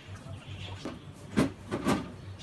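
Doors of a side-by-side refrigerator being pulled open, with two sudden thuds, the sharper about a second and a half in and a second near the end.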